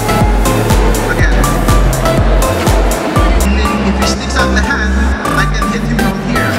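Electronic dance music with a heavy, steady beat of deep kick drums that drop in pitch, about two to three a second, over synth tones.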